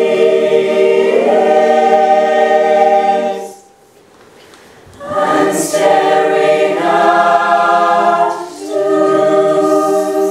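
Mixed choir singing sustained chords in parts. The voices break off about three and a half seconds in for a little over a second, then come back in.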